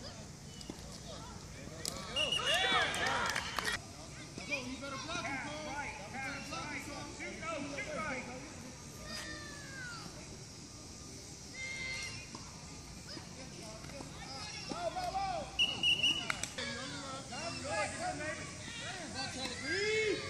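Distant, overlapping shouts and chatter of coaches and young players across an open football field, swelling twice.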